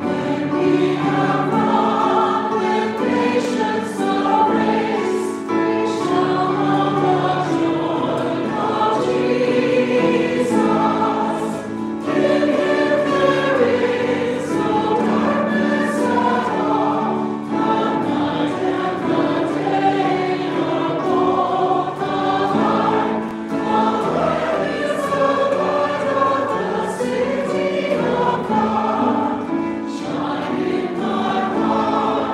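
Group of voices singing a hymn together with instrumental accompaniment, line by line, with short breaks between phrases.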